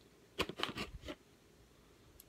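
Knife blade slitting the packing tape on a cardboard box: a quick run of scratchy cuts and scrapes, lasting under a second.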